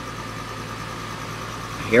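Steady running of a saltwater aquarium's sump: water bubbling through the filter chamber for oxygenation, over a low hum with a faint higher tone from the pump.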